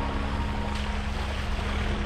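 Soft background music holding one sustained low note, over a steady low rumble of wind buffeting the microphone.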